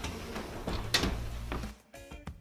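Gas range's oven door being shut, with a sharp clunk about a second in after a lighter knock or two. The sound cuts off suddenly near the end.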